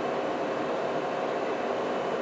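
Steady, even hiss of room background noise with a faint hum underneath, unchanging throughout.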